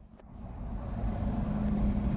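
Chrysler Town & Country's V6 engine idling, a steady low hum that grows louder over the first second, with a steady tone joining it about halfway through.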